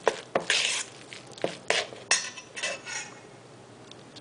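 Metal spoon scraping and clinking against a stainless steel mixing bowl as a thick rice stuffing is stirred. The scrapes come irregularly and die away in the last second.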